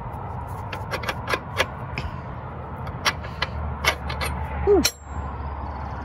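Steel die clinking and scraping against a log splitter's steel wedge as it is worked on by hand, a tight fit, giving a string of sharp metal clicks and taps. There is a short squeak about three-quarters of the way through, and a low hum in the background in the second half.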